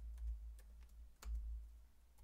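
Computer keyboard keystrokes: a few scattered taps as numbers are typed, with one louder key press a little past a second in, over a low steady hum.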